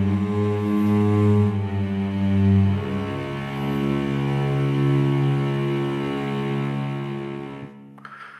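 Hyperion Strings Micro sampled cello section (Soundiron Kontakt library) playing low sustained pianissimo notes, with the sound of the bow coming through. The held notes move to new pitches about three seconds in and die away just before the end.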